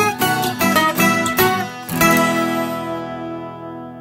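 Acoustic guitar playing the closing notes of a folk-country ballad: quick plucked notes, then a final chord about halfway through that rings out and fades away.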